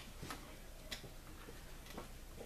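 Faint, sharp ticks about once a second, with a softer click in between.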